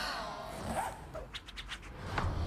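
Trailer soundtrack from an animated film: a brief whine-like gliding sound, then a quick run of scratchy strokes about a second and a half in, like a pencil scribbling on paper.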